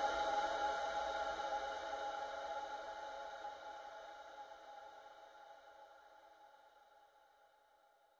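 The closing fade-out of a deep, hypnotic techno track: sustained electronic chord tones hold steady while the bass drops away in the first seconds, and the whole sound fades evenly toward silence.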